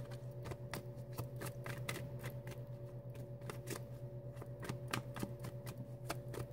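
A deck of tarot cards being shuffled by hand: a quick, steady run of soft card slaps and clicks, several a second. A faint steady low hum runs underneath.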